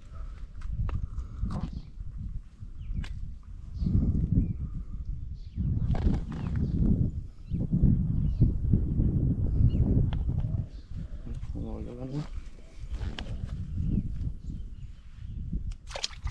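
Low, gusty rumble of wind on the microphone, with indistinct murmured voices and a few small clicks.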